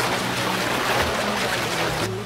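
Cartoon sound effect of water splashing and rushing, a dense steady wash of noise, with low steady music tones underneath.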